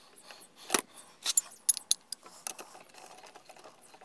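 Socket wrench and extension working the front suspension link nut of a Hero Pleasure scooter, giving irregular sharp metallic clicks and clinks. The loudest click comes a little under a second in, and a quick run of clicks follows between one and two seconds.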